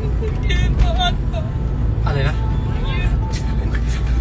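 Steady low rumble of a car in motion, heard from inside the cabin, with brief chatter over it.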